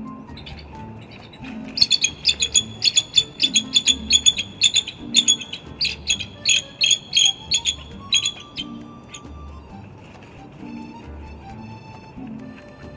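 Bald eagles giving a long run of rapid, high-pitched chittering calls while mating, starting about two seconds in and stopping about nine seconds in, over background music with a steady beat.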